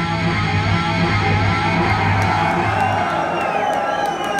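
Heavy metal band playing live: distorted electric guitars over bass and drums. About three seconds in, the low end drops away, leaving a guitar line with bending notes.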